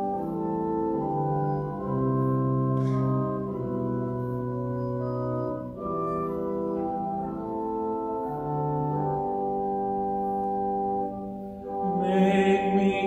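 Church organ playing through the melody of a sung psalm setting once as an introduction, in sustained chords that move note by note, with short breaks between phrases.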